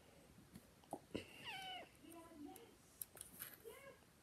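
Faint voice-like calls. One falls in pitch about a second and a half in, a lower wavering one follows, and a short rising-and-falling one comes near the end. Two light clicks come just before the first call.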